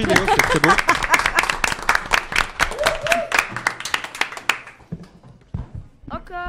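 A small group applauding, with voices over the clapping at first; the claps thin out and stop about four and a half seconds in, followed by a few soft knocks.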